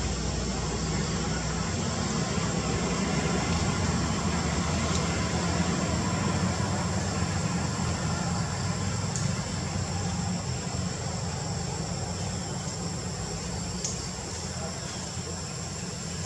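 Steady background noise: a low rumble with a thin, steady high-pitched tone above it, a little louder in the middle and easing off near the end.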